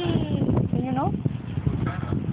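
A small child's wordless vocal sounds: two short pitched whines, one falling near the start and one rising about a second in, over a steady low background rumble.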